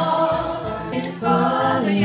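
Three women singing in close harmony, holding notes without clear words, then starting a new phrase a little over a second in.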